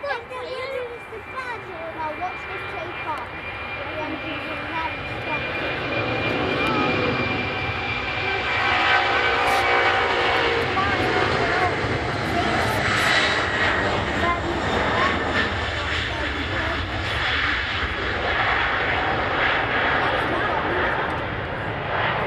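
A Boeing 747-400's four turbofan engines at takeoff power during the takeoff roll and climb-out. The rumble grows steadily louder as the jet accelerates down the runway and passes, then stays loud, with a high whine that slowly falls in pitch.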